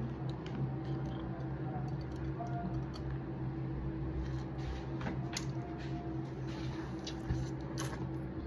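A person biting and chewing a chili-powder-coated treat off a skewer: scattered soft clicks and wet mouth sounds over a steady low hum.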